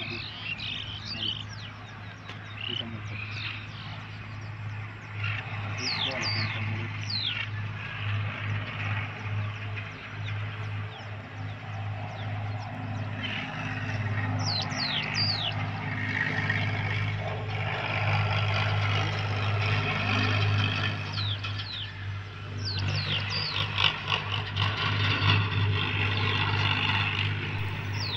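Birds giving short, high calls that sweep sharply downward, in clusters a few seconds apart, over a steady low hum.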